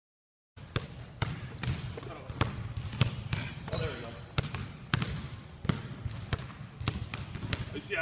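Basketballs bouncing on a hardwood gym floor, a sharp bounce about twice a second, starting about half a second in.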